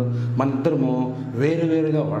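A voice chanting in long held notes that step up and down, over a steady low drone, in the manner of a devotional mantra.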